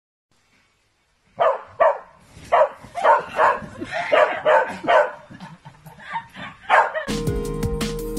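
A dog barking repeatedly, about two to three barks a second, starting about a second and a half in after a moment of near silence. Music starts near the end.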